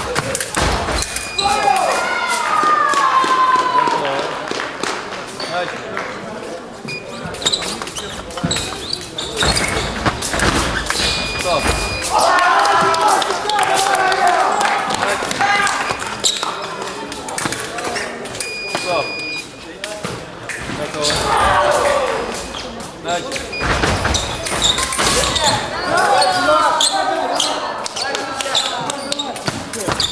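Fencers' feet stamping and knocking on the piste in quick irregular strikes, with loud shouts in between. A steady electronic tone from the scoring machine sounds a few times for about a second each, as hits register.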